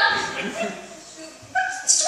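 Short, high-pitched vocal cries without clear words: one fading away at the start, then two brief ones near the end.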